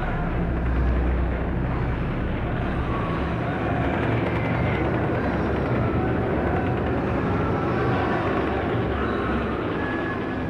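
A steady, dense rumble, its deepest bass easing off about two seconds in.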